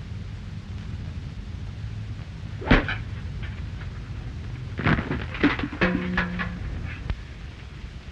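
A golf club strikes a ball once with a single sharp crack about three seconds in, over the steady hum and hiss of an early optical film soundtrack. A few softer knocks and a short low held tone follow around six seconds.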